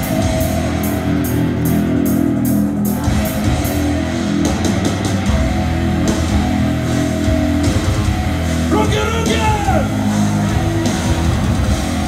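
A live metal band playing loud, with electric guitars and a drum kit, heard through a phone recording from within the audience.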